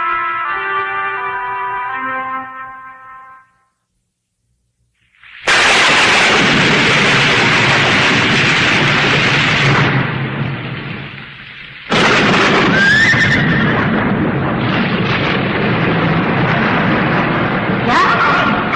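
Cartoon soundtrack: a short melody of descending notes fades out, and after about two seconds of silence a loud, noisy sound effect like thunder or a crash begins. It dips about two-thirds of the way through, then comes back loud with a few gliding tones in it.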